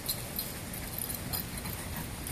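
Small dog running across a grass lawn: a few faint, irregular ticks and rustles over steady outdoor background noise.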